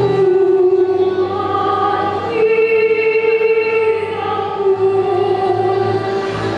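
A woman singing a slow ballad solo into a microphone, holding long notes with vibrato that change about every two seconds, over a low, sustained accompaniment.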